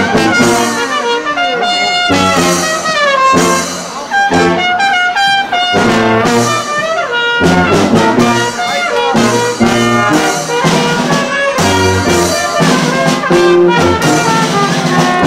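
Live brass band of trumpets, trombones and a tuba playing a Christmas carol in rhythmic, punchy phrases.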